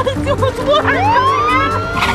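Police car siren: a fast, repeating yelp, then about a second in a wail that rises and holds at a high pitch.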